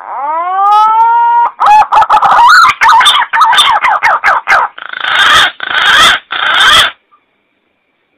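Green pigeon (punai) calling loud and clear, played as a lure call: a long whistled note rising in pitch, then a fast run of wavering, warbling notes, then three hoarser notes, stopping about seven seconds in.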